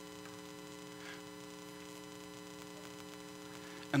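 Faint, steady electrical hum made of several constant tones, with no other event; a man's voice comes back in right at the end.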